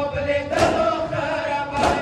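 Men's voices chanting a noha while a crowd of men beat their chests in unison (sinazani). The strikes land together about every 1.2 seconds, twice here, over the steady chant.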